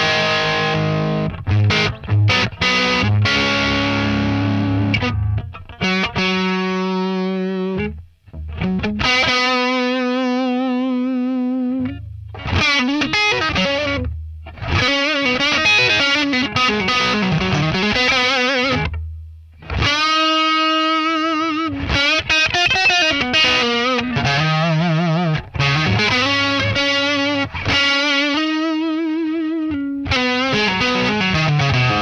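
Loud electric guitar, chords and riffs played through a Fender Deluxe Reverb valve combo amp driving a 2x12 cabinet loaded with Vintage 30 speakers, with two brief stops, about eight and twenty seconds in. The player finds its tone very glassy and harsh.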